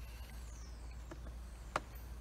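Quiet outdoor background with a steady low rumble, a faint high bird whistle falling in pitch about half a second in, and one sharp click near the end.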